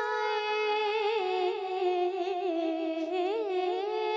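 A boy's voice reciting a naat, an Urdu devotional poem in praise of the Prophet, sung alone into a microphone with long, ornamented held notes that sink gradually in pitch.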